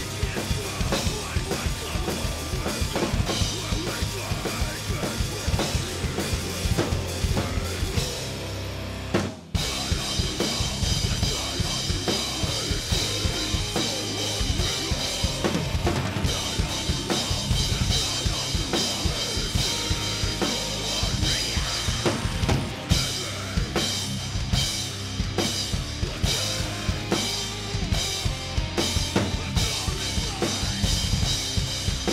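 Acoustic DW drum kit played hard and fast along to a recorded metalcore track: dense kick and snare strokes with cymbals ringing. Everything drops out briefly about nine seconds in, then the heavy playing resumes with steadier cymbal wash.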